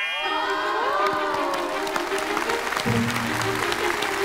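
Audience and cast applauding over a music cue that opens with gliding, swooping notes and then holds on sustained tones.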